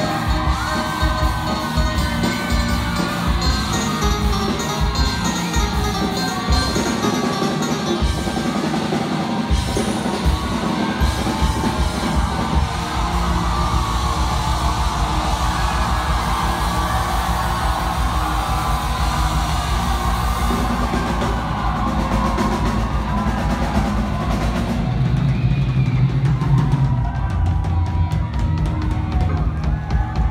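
Live band playing on stage: a drum kit keeps the beat over a steady bass, with a voice singing the melody. It is loud throughout, and the drumming grows denser about halfway through.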